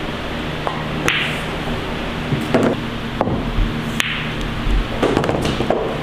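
Pool cue striking the ball and billiard balls clacking together: a series of six or seven sharp knocks spread over the few seconds, over a steady low hum.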